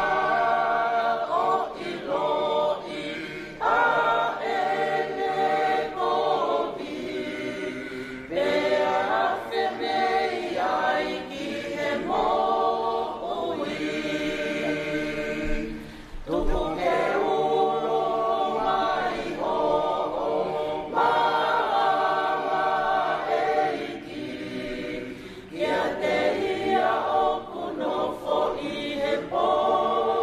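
Mixed choir of men and women singing a hymn a cappella in parts, in long held phrases with two short breaks for breath.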